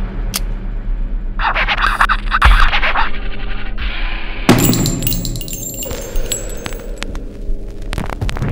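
Intro music with a steady low bed; about halfway through, a run of bright metallic clinks and ringing of spent brass shell casings dropping onto a hard floor. A loud noisy burst comes earlier, about a second and a half in.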